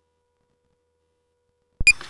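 Near silence with only a faint steady tone, then near the end a sharp electronic click and a very short high-pitched beep as the sound cuts back in.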